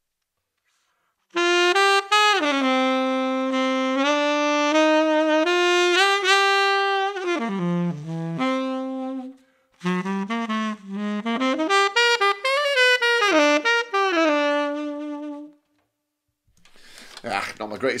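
Unaccompanied tenor saxophone playing the closing phrase of a jazz ballad: long held notes that dip low, a brief breath about halfway, then a quicker run of little licks around the melody before the last note is held and released.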